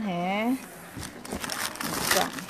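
Plastic wrappers and bags crinkling as a hand rummages through a cardboard box of packaged goods, in irregular crackles that start about a second in and grow busier near the end.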